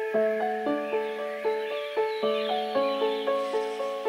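Gentle piano melody in evenly spaced notes, about four a second, over a held low note, with birdsong faintly in the background.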